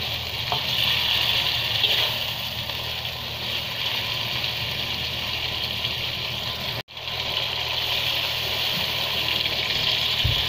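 Chili paste with stingray pieces sizzling steadily in an aluminium wok, with a metal spatula clicking and scraping against the pan a few times in the first couple of seconds. The sound cuts out for an instant just before seven seconds in, then the sizzling carries on.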